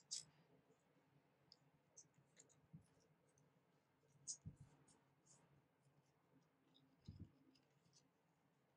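Faint crinkles and clicks of a small square of origami paper being folded and pressed flat with the fingertips, with soft low thumps of fingers on the table about halfway through and near the end.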